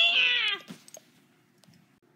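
A cat meows once, a single call of about half a second that falls slightly in pitch.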